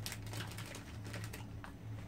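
Chewy foam sweets (Squashies) being chewed with the mouth, a few soft, irregular sticky clicks, over a steady low hum.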